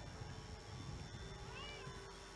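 Faint background hum in a pause between speech, with one short, high meow-like call that rises and falls about one and a half seconds in.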